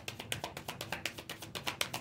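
A deck of tarot cards being shuffled by hand: a rapid, even run of soft card clicks and slaps, many a second.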